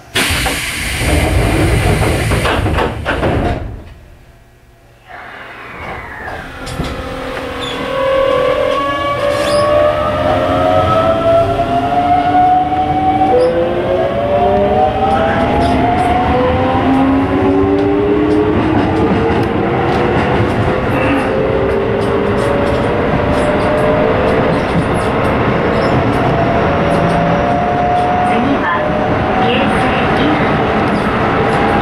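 Keisei 3700-series electric train pulling away from a station, heard from inside the car: the inverter-driven traction motors whine in several tones that rise slowly in pitch as it gathers speed. It opens with a loud rush of noise lasting about three seconds, then a brief lull before the whine starts.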